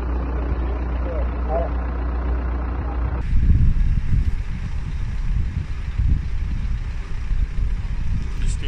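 Outdoor street noise at a crash scene: a steady low hum of vehicles with faint voices. About three seconds in, the sound cuts abruptly to a different recording with a deeper, uneven rumble, fitting idling emergency vehicles.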